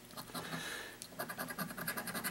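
A coin scratching the coating off a paper scratch-off lottery ticket. It starts faint, then settles into rapid, even back-and-forth strokes about a second in.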